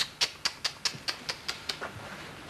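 A quick, even run of about ten light, sharp clicks, about five a second, growing fainter near the end.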